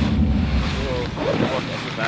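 Wind buffeting the camera microphone, a loud low rumble that eases after about a second, with a faint distant voice calling out in the middle.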